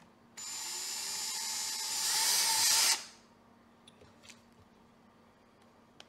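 Ryobi ONE+ cordless drill running a fine bit into aluminium, drilling out a sheared mirror-mount thread in a brake fluid reservoir. It starts about half a second in, runs for about two and a half seconds getting louder, and stops suddenly. A couple of faint clicks follow.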